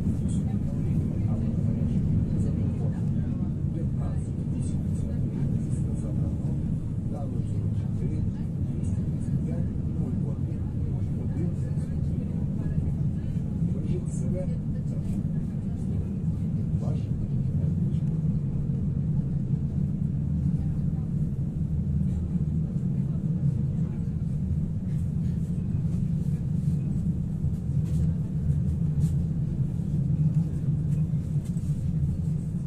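Steady low rumble inside a Pesa Foxtrot tram as it runs along the track, with faint scattered ticks.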